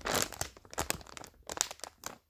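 Plastic packaging bag crinkling as it is gripped and handled: a dense burst of crinkling at the start, then scattered separate crackles.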